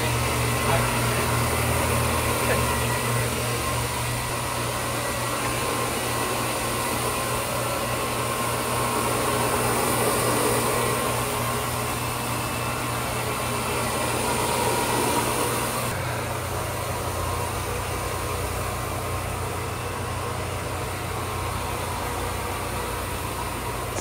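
Counter-rotating brush (CRB) floor machine running steadily, its cylindrical brushes scrubbing a greasy terrazzo kitchen floor: a continuous low motor hum with brush noise over it, which shifts slightly about two-thirds of the way through.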